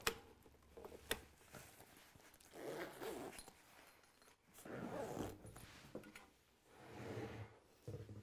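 Zipper on the fabric battery pocket of a power ascender winch being pulled closed, faintly, in three short strokes of about a second each, with a couple of light clicks about a second in.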